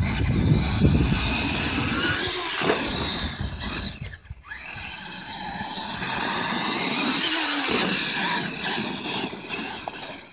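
Electric motors and geared drivetrain of a Traxxas E-Maxx RC monster truck whining as it drives through sand. The pitch rises and falls with the throttle, in two long runs with a brief lull about four seconds in.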